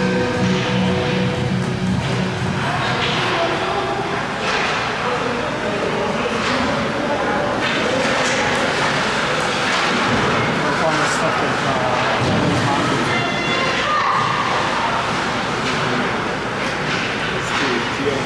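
Ice hockey play in a rink: skate and stick noise with scattered sharp knocks from sticks and puck, under the chatter of spectators. Arena music stops in the first second or two.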